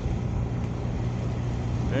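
Car driving slowly, heard from inside the cabin: a steady low engine and road hum under even tyre noise.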